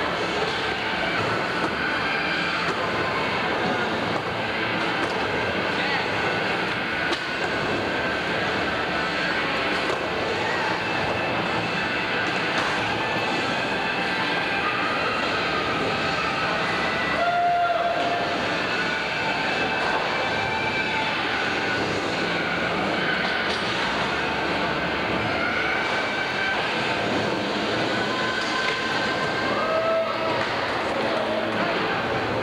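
Skateboard wheels rolling back and forth on a wooden vert ramp, a steady rolling noise, with a crowd of voices echoing in a large hall.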